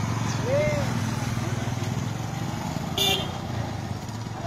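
A motorcycle engine running steadily with a low, rapidly pulsing rumble, under scattered shouting voices. A brief sharp high-pitched blip about three seconds in.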